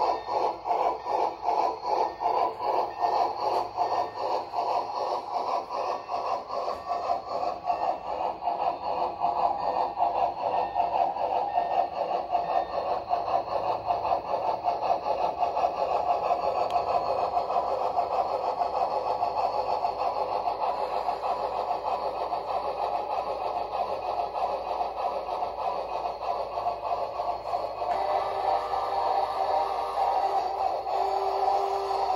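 A sound-equipped model of a Great Northern R-1 articulated steam locomotive chuffing through its small onboard speaker. The exhaust beats are spaced at first, then quicken and run together as the model gathers speed.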